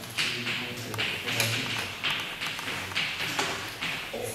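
Chalk writing on a blackboard: a series of short taps and scratchy strokes as symbols are written, coming in quick pairs roughly once a second.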